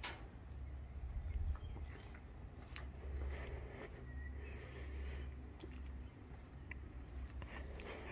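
Quiet outdoor ambience: a low, uneven rumble with a few faint bird chirps and light clicks.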